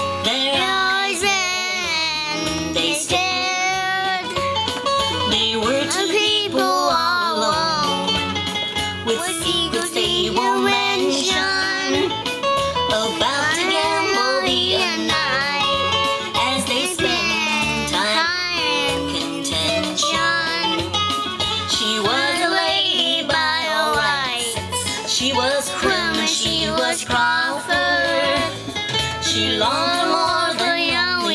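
A four-year-old boy singing a narrative song in phrases, with guitar accompaniment.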